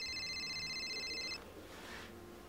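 Mobile phone giving a high, buzzing electronic tone as a call is placed; it cuts off suddenly about one and a half seconds in.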